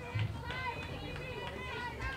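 Distant voices calling out and chattering across a softball field, several at once, over a low steady hum.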